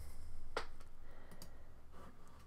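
A single computer mouse click about half a second in, followed by a couple of much fainter ticks a second later.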